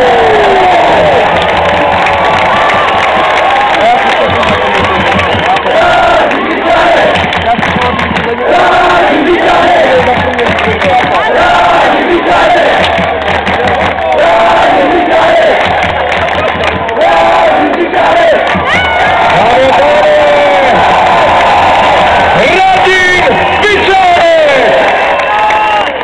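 A large crowd of ice hockey fans cheering and shouting loudly and without a break, many voices over one another.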